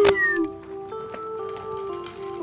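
Sitcom background music with held notes that shift in pitch. It opens with a sharp click and a brief gliding sound effect at the tail of a falling whistle-like slide.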